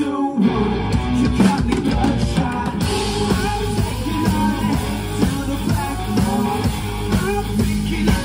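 Live rock band playing: electric guitars, bass guitar and drum kit. After a brief drop just before the start, the full band comes back in right away, with cymbals thickening about three seconds in.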